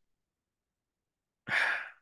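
A man sighing once, a short breathy exhale about one and a half seconds in, after a pause in his reading; he has just said he is tired.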